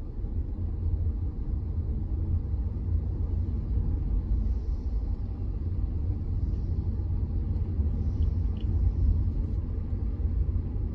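Steady low rumble of a car moving in traffic, its engine and tyres on a wet road, heard from inside the cabin. Faint hissing swells rise now and then in the second half, with two small ticks near the end.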